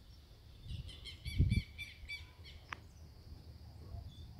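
A small bird singing: a run of quick, repeated high chirps, several a second, for about two seconds, with a brief low rumble partway through.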